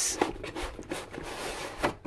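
Cardboard rubbing and scraping as a corrugated inner box is slid out of a printed cardboard sleeve, with a brief louder bump near the end.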